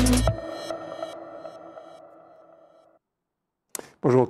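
Electronic theme music ending on a final hit, its held chord ringing out and fading to silence over about three seconds.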